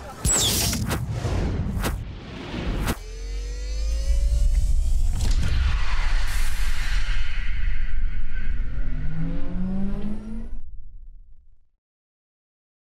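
Production-logo sound effects: a whoosh and a sharp hit at the start, two more hits within the first three seconds, then a deep sustained rumble overlaid with rising sweeps, fading out about eleven seconds in.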